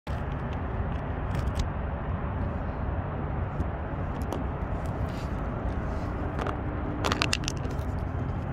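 A new T/A's engine idling steadily, heard at the exhaust tip as an even low rumble, only partly cold. Scattered clicks and rubbing from the phone being handled come about a second and a half in and again near the end.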